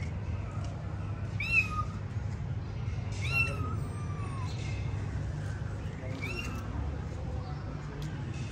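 Kitten meowing: three high mews, about a second and a half in, a longer one around three to four seconds in that falls in pitch, and another about six seconds in.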